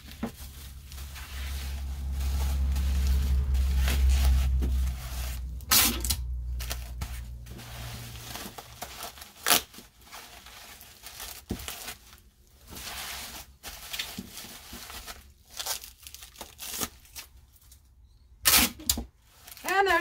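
Bubble wrap crinkling as items are wrapped, with several short, sharp rips of packing tape pulled off a tape dispenser. A low rumble dominates the first few seconds.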